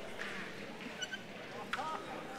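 Quiet room tone of a large hall with a faint murmur of distant voices, and a brief high clink about a second in.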